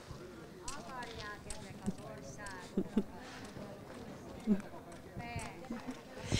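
A few scattered shoe steps on pavement, short quiet thumps a couple of seconds in and again later, as a boy tries a few dance steps, under faint background talk.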